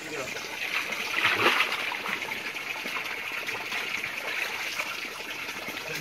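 Shallow creek water running and trickling, with splashing as hand nets are worked through it; the water sound peaks about a second and a half in.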